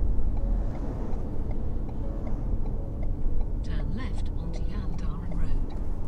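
Road noise heard from inside a vehicle cabin while driving on a highway: a steady low rumble of engine and tyres.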